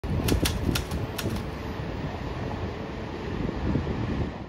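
Wind buffeting the microphone, an uneven low rumble under a steady hiss, with a few sharp clicks in the first second and a half.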